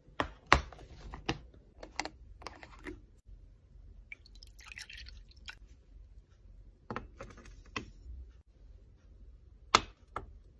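Close handling of small objects on hard surfaces: a scattered series of sharp taps, clicks and knocks, the loudest shortly after the start and near the end, with a brief rustle about five seconds in.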